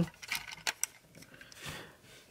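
A few light clicks of a transforming robot figure's plastic parts and joints as its leg is folded down by hand, bunched in the first second.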